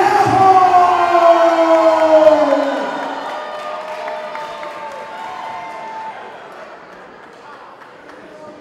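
A ring announcer's drawn-out shout of a fighter's name through a microphone, one long call that slides slowly down in pitch for nearly three seconds. The crowd then cheers, fading away over the rest.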